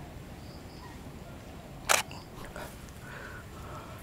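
A single camera shutter click about two seconds in, over a faint outdoor background.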